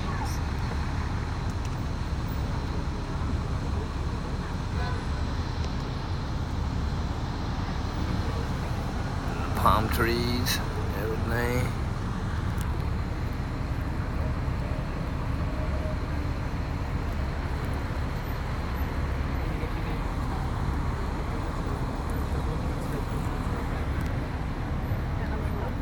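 Steady road and traffic noise heard from a moving open-top tour bus, with a brief rising, wavering sound about ten seconds in.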